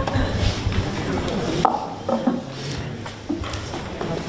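Low murmur and shuffling in a hall, with low handling bumps and one sharp knock about one and a half seconds in.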